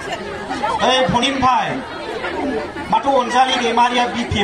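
A man giving a speech into podium microphones, his amplified voice continuing with only short pauses.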